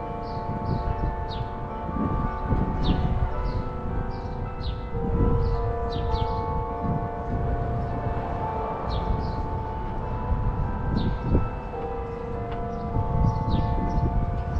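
Carillon bells of a town clock playing a slow tune, with notes held and overlapping. Short high chirps sound throughout.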